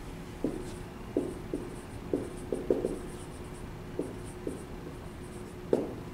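Dry-erase marker squeaking on a whiteboard in a string of short, irregular strokes as words are written by hand.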